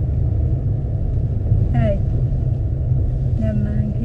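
Steady low rumble of a car driving, road and engine noise heard inside the cabin, with a couple of short spoken fragments near the middle and toward the end.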